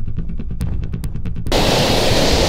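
Muffled rumble with a few faint clicks, the sound of the microphone being covered and handled. About a second and a half in, the open rush of a fast creek and wind returns.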